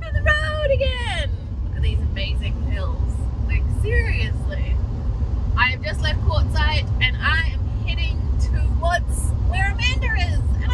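Steady engine and road rumble inside the cab of a 1999 Utilimaster Ford E-350 step van cruising on a highway, with a woman's voice over it.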